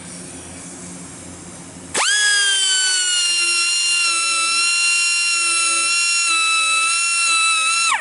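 Small handheld grinder with a curved-edge wheel switched on about two seconds in, grinding the face of a sawmill band blade tooth with a steady high whine. Its pitch dips slightly as it settles, and it cuts off suddenly after about six seconds.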